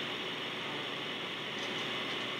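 Steady hiss of noise on the recording, even throughout, with no other sound standing out; it is the faulty sound track.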